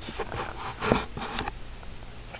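Handling noise of a camera being set in place: a few bumps and rustles in the first second and a half, the loudest about a second in, then a low steady hum.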